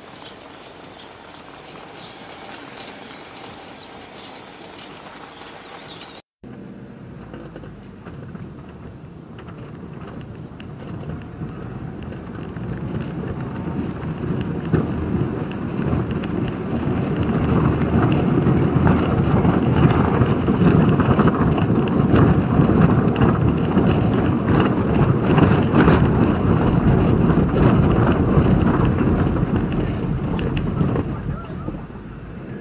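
BMW roadster driving over cobblestone streets: a dense, continuous rumble and rattle of the tyres and car on the stones. It grows steadily louder from about twelve seconds in, after a brief dropout about six seconds in.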